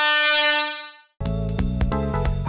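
Sound effect: a single steady tone that fades out within the first second, then background music starts just over a second in.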